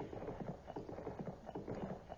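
A faint background of quick, irregular soft knocks.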